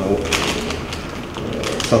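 A brief rustle of paper sheets being handled during a pause in a man's speech. His voice resumes near the end.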